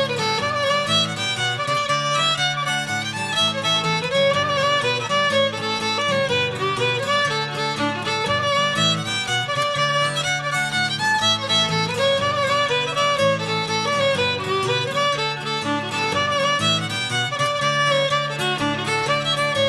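Instrumental folk tune with a fiddle carrying the lead melody over a steady accompaniment, without singing.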